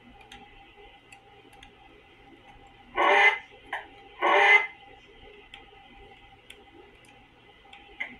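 DVD menu audio from a TV: a low steady background with faint light ticking, broken by two short loud bursts of sound about three and four seconds in, as the menu pages change.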